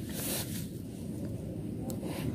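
Low, steady background noise with a brief soft rustle near the start and a small click near the end.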